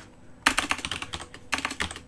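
Typing on a computer keyboard: a quick run of keystroke clicks starting about half a second in.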